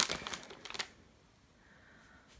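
A hand rummaging through a pile of folded fabric and a plastic bag, making a quick run of crackly rustling in the first second.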